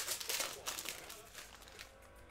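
A foil Panini Contenders Draft Picks basketball card pack being torn open, its wrapper crinkling. The crackle is densest in the first second and dies away by about a second and a half in.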